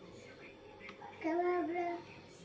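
Quiet room tone, then about a second in a child's voice singing one long steady note with a brief dip in pitch.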